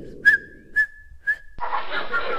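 A high whistle sound effect, held on one pitch for about a second and a half with three short chirps about half a second apart, cutting off suddenly.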